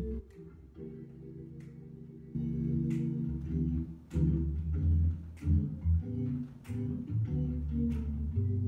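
Recorded blues-groove band track playing, with organ, bass and guitar over a drum beat that lands a little more than once a second. The band fills out and gets louder about two seconds in.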